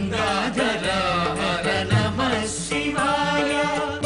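Devotional Shiva hymn music: a chanted, sung melodic line over a steady held drone.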